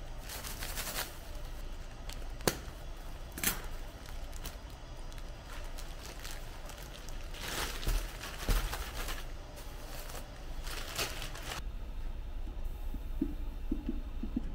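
Large clear plastic bag of expanded polystyrene (Styrofoam) beads rustling and crinkling as it is handled, in irregular bursts with a few sharp crackles, stopping about three-quarters of the way through. A low steady hum runs underneath.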